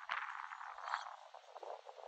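Superb starling giving a harsh, rapid chattering call, loudest in the first second and then fading into scattered notes.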